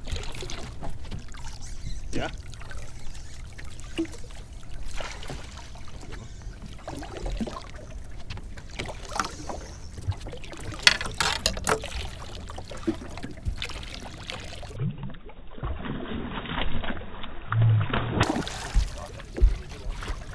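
Water lapping against the hull of a small fishing boat with wind rumbling on the microphone, broken by scattered knocks and clicks of handling on deck, a cluster of them about eleven seconds in.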